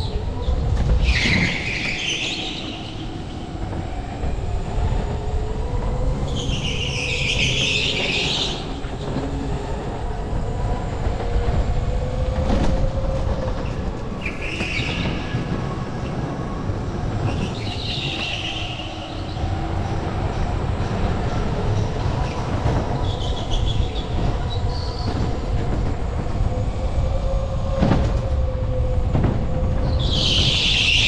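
Electric go-kart driven at speed: the motor's whine rises and falls in pitch as it accelerates and brakes, over a steady rumble of the tyres on the smooth concrete floor. Several short, high tyre squeals come through the corners.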